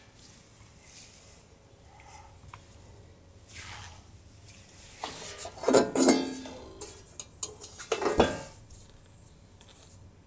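A flat rigid semicircle cutout being lifted off its hanging pin, turned and rehung: a cluster of clinks and knocks with brief ringing from about halfway through, loudest near the middle and again near the end.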